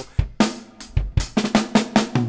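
Acoustic drum kit played in a quick burst: snare and bass drum strokes at about five a second, some with a deep kick-drum thump.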